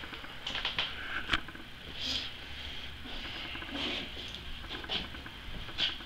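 Scattered light clicks and taps of a hand wrench and tools being worked on a motorcycle's swing-arm pivot pin, a few irregular clicks at a time with a quieter stretch in the middle.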